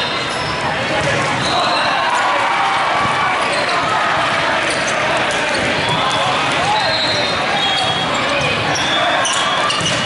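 Steady din of a large indoor sports hall with many volleyball games in play: many voices calling and talking at once, with balls bouncing and short high squeaks from shoes on the court floor.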